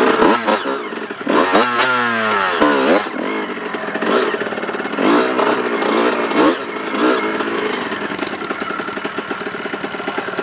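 Dirt bike engine being ridden, its revs rising and falling repeatedly with the throttle, with several long drops in pitch in the first half. Near the end it settles into a lower, steady run as the bike slows.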